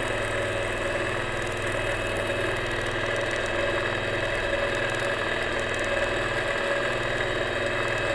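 Longarm quilting machine running and stitching freemotion: a steady mechanical hum with the fast, even rhythm of the needle.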